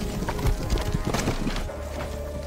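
Cartoon action sound effects over dramatic score music: a burst of heavy knocks and a monster's cries in the first half, then a low steady hum sets in near the end as an energy portal opens.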